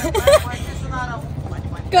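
Short bits of a woman's talk in the first second, over a steady low background hum.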